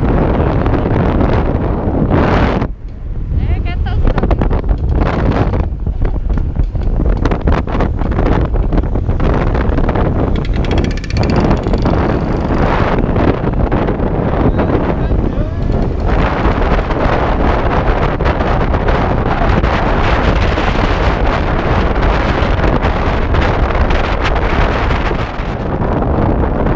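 Wind buffeting the microphone of a camera on a moving scooter, a loud steady rush with a brief lull about three seconds in, over the scooter's running engine.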